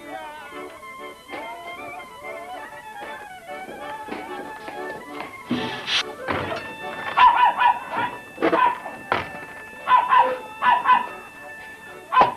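Soft background music, then a thud about five and a half seconds in, followed by a dog barking loudly and repeatedly in quick runs of two or three barks.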